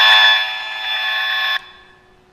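Audio output of a radio-frequency (electrosmog) detector giving a loud, steady, harsh buzz, the sound of a mobile-phone transmitter's signal, which the speaker reads as in the red zone. It cuts off suddenly about one and a half seconds in.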